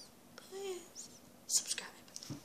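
A young girl speaking softly, mostly in a whisper; the words are not clear.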